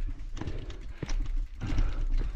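Bicycle jolting down a rough dirt trail: irregular knocks and rattles from the frame and wheels over roots and stones, with a steady low rumble of wind on the microphone.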